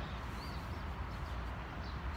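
Outdoor park ambience: a steady low rumble and hiss, with a few faint high bird chirps.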